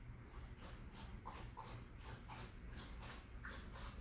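Cats giving a few faint, short mews, two close together a little over a second in and another near the end.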